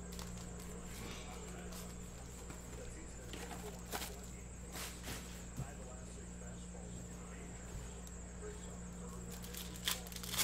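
Quiet room tone: a steady low electrical hum with a thin high whine, broken by a few faint light taps about four and five seconds in.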